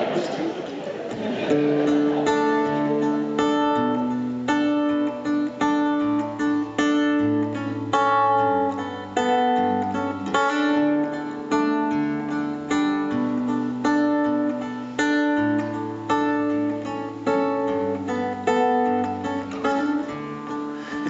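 Acoustic guitar playing the introduction to a song: single plucked notes in a repeating arpeggio over changing bass notes, starting about a second and a half in.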